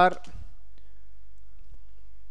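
A man's voice trailing off at the start, then a steady low hum with a few faint clicks.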